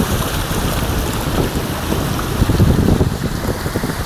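A car driving through shallow floodwater on a road: water sloshing and splashing around the tyres and body, mixed with wind buffeting the microphone. It swells a little louder after about two and a half seconds.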